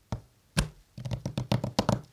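Hands tapping and handling a sketchbook on a desk: a knock about half a second in, then a quick run of light taps through the second half.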